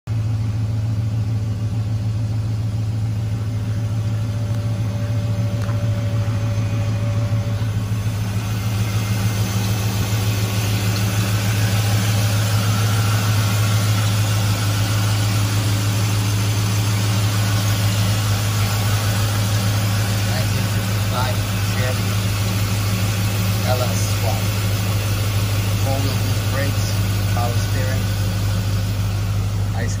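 The Corvette LS V8 in an LS-swapped 1955 Chevrolet Bel Air, idling steadily with an even, low-pitched running note.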